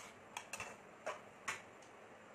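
A metal slotted spatula clinking against a frying pan while stirring food: a few sharp, irregularly spaced clicks, fewer toward the end.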